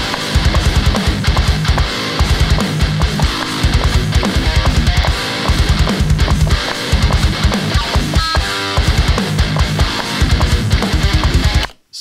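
Playback of a heavy metal riff on distorted electric guitar, its tone printed from a Neural DSP Nano Cortex, locked to programmed drums in fast, rhythmic low chugs. It stops abruptly just before the end.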